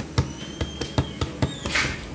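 Irregular light clicks and taps, a few a second, from a small hard plastic part being turned in the hands, with a short hiss near the end.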